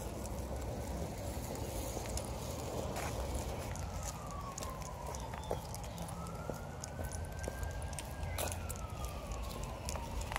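A faint siren wailing, its pitch slowly falling, then rising and falling again, over a steady low rumble.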